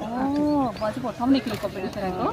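People talking, one voice drawing out a long sound that rises and falls in pitch at the start.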